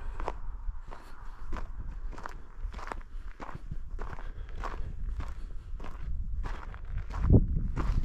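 Footsteps of the person filming, walking at an easy pace along a partly snowy dirt path, a bit under two steps a second. A louder low rumble comes in near the end.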